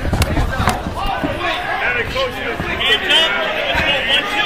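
Several men's voices shouting indistinctly over background chatter, with two sharp smacks in the first second.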